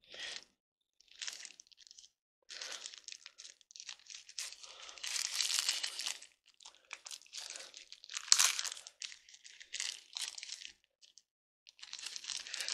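Packaging crinkling and rustling in irregular spurts as the thermal pad for an NVMe SSD is pulled out of it, with one sharp click a little past the middle.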